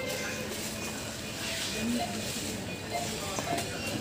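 Supermarket ambience: indistinct voices of other shoppers over a steady hubbub, with faint background music.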